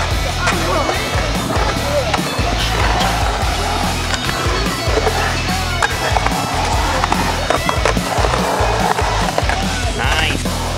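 Skateboard wheels rolling on the concrete of a full pipe and bowl, a steady rumble broken by occasional sharp clacks of the board, with music playing underneath.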